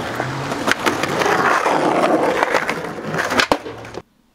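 Skateboard wheels rolling on a concrete sidewalk, a steady rolling rumble with a few sharp clacks. It cuts off suddenly at the end.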